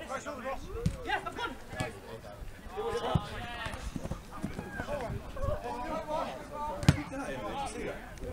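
Footballers shouting and calling to each other during play, with several sharp thuds of the ball being kicked. The loudest kick comes about seven seconds in.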